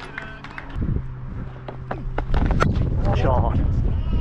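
Outdoor ambience picked up by a body-worn camera: wind rumbling on the microphone, with scattered clicks and a steady low hum through the first half. A short burst of distant voice comes near the end.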